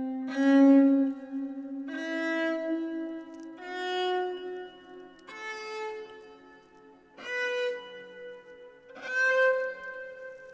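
Soma Dvina, a bowed fretless string instrument, playing a microtonal Marwa scale in Centaur just-intonation tuning without the resonator, one slow bowed note at a time. About six notes step upward, each held for a second or two, over a lower note that keeps sounding underneath.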